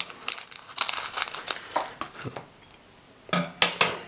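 A foil trading-card booster pack crinkling and crackling as it is handled and its top is cut off with scissors. The rustling is irregular, with a sharp click near the end.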